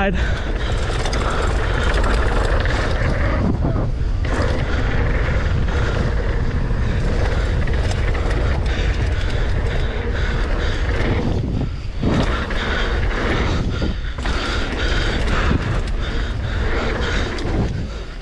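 Wind rushing over the camera microphone and a mountain bike's tyres rolling and skidding on loose, dry dirt during a fast downhill descent, with the bike rattling over the bumps. The noise is steady and loud, dropping briefly about three times.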